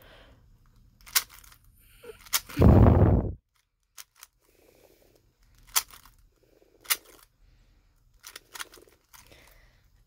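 GAN 12 Maglev magnetic speed cube being turned by hand: scattered sharp plastic clicks as the layers snap into place. A heavier dull thump about two and a half seconds in is the loudest sound.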